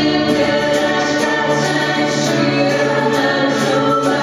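Live acoustic music: a man and a woman singing together over a strummed acoustic guitar and a Nord Electro 2 keyboard.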